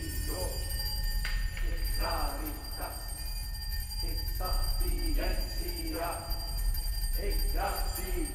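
Chamber ensemble film score: a low sustained drone and high held tones, with short vocal phrases coming every second or so over them.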